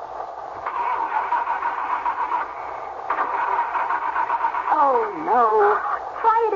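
Car starter cranking the engine in two tries of about two seconds each without it catching, which the driver puts down to something having shorted out. A voice comes in near the end.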